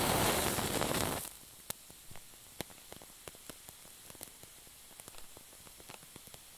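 A lighter's flame hissing for about the first second, then cutting out as it is taken away. After that the lit wick burns with faint, scattered crackles.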